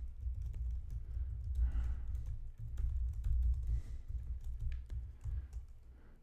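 Typing on a computer keyboard: a run of quick, irregular key clicks as a sentence is typed out.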